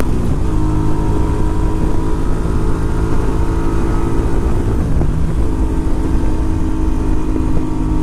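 Engine of a 1982 Honda Silver Wing, a 500 cc 80-degree V-twin, running steadily at highway cruising speed, with wind rushing over the microphone. The engine note dips briefly about five seconds in, then steadies again.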